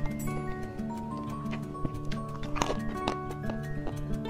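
Background music with held notes, over the mouth sounds of eating soft chocolate mousse cake: wet clicks and smacks, the loudest about two and a half seconds in.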